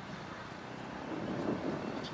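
Distant Toshiba electric multiple unit approaching the station, a low steady rumble that swells briefly about a second and a half in.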